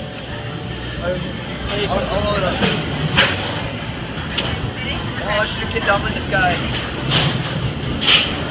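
Indistinct voices of people nearby over a steady low hum, with a few sharp clicks or knocks scattered through.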